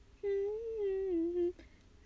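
A young woman humming a short wordless melodic phrase that wavers gently in pitch and stops about a second and a half in.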